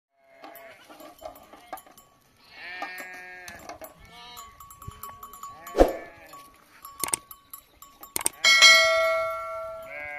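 A flock of sheep and goats bleating, several calls with one long, loud bleat near the end, mixed with bells clinking and a few sharp knocks.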